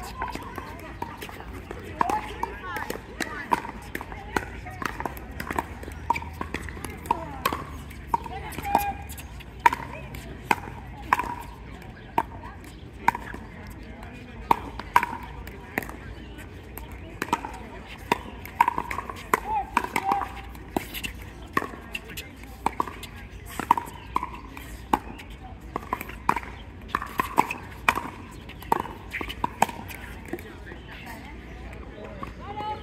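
Long pickleball rally: paddles striking the plastic ball in an irregular run of sharp pocks, often less than a second apart, over a murmur of voices.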